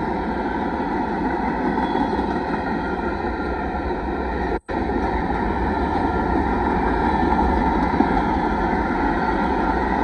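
Freight train cars, covered hoppers and boxcars, rolling steadily past at close range, a continuous rumble of steel wheels on the rails. The sound drops out for a split second about halfway through.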